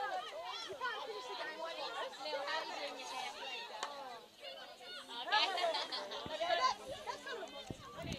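Faint voices calling and chatting, with one sharp crack of a field hockey stick striking the ball about four seconds in.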